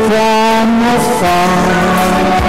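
Band playing an instrumental passage of a slow ballad, with long sustained chord notes that change to a new chord about a second in.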